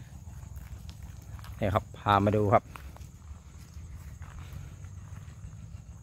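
Footsteps crunching softly on a gravel and grass track, with a faint steady high-pitched whine underneath.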